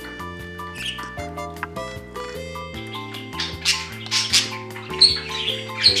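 Budgerigars chirping repeatedly from about halfway in, short high chirps over light background music with a stepping melody.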